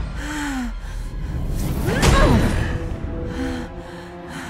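A woman's strained gasps as she struggles against a grip, with a sudden hit about two seconds in, over orchestral film score.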